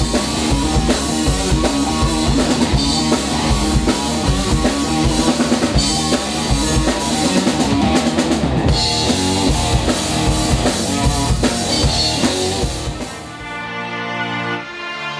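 Live rock band playing: electric guitar, bass guitar and drum kit with a steady beat. About a second before the end the band fades out and calmer music with held notes takes over.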